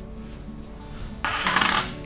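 Salt shaken from a small shaker into a glass jar: a brief grainy rattle of about half a second in the second half, over soft background music.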